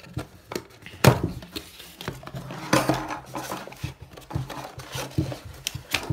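Cardboard packaging being handled and opened by hand: irregular knocks, taps and rustling scrapes of card and paper flaps. The loudest knock comes about a second in.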